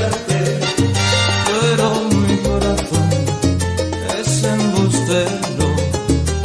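Salsa erótica (romantic salsa) track playing in a DJ mix, instrumental at this point: a bass line moving in steady notes under a busy, even percussion rhythm and melody instruments.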